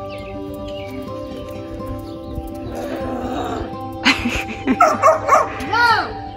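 Background music with steady held tones, and a dog barking several times in quick succession over the last two seconds.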